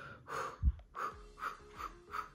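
A woman's short, quick breaths puffed out through pursed lips, about five in a row, to ease lips stinging from a chili lip plumper. A single low thump comes about two-thirds of a second in, over faint background music.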